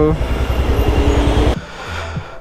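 Motorcycle engine running with surrounding road traffic: a steady low rumble under a noisy haze, which cuts off abruptly about one and a half seconds in.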